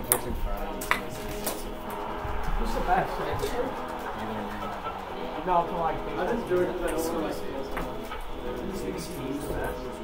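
Music playing with some talking over it, and sharp clicks of a table-tennis ball struck by paddles and bouncing on the tables, the clearest right at the start and about a second in.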